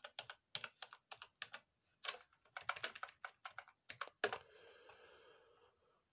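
Typing on a computer keyboard: an irregular run of key clicks that stops about four seconds in.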